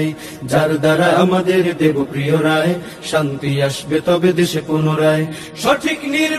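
A man's voice chanting in a steady, song-like rhythm, in phrases with short breaks between them.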